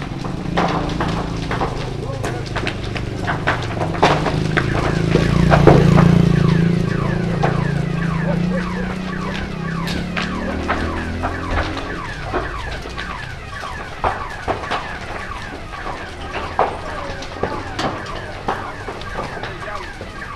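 Large building fire crackling and popping, with many sharp snaps throughout and people's voices in the background. A low rumble swells to a peak about six seconds in and then fades.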